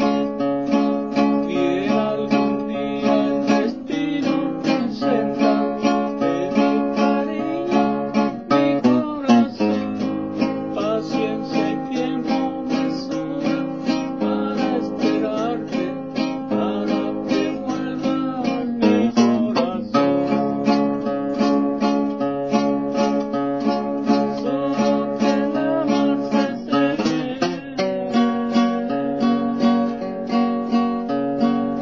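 Acoustic guitar strummed in a steady rhythm, chords ringing on continuously.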